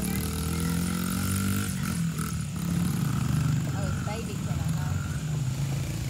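Small engines of a kids' dirt bike and ATV running on a dirt track, the engine note falling over the first two seconds and then rising and falling as they ride.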